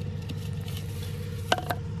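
A steady low motor hum, with two sharp clicks about a second and a half in as a hand works back grass over a plastic catch-basin grate.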